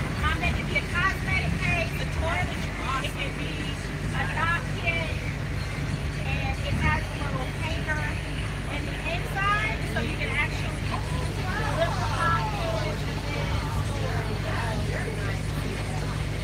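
Overlapping chatter of several voices over the steady low drone of a moving bus, heard from inside the cabin.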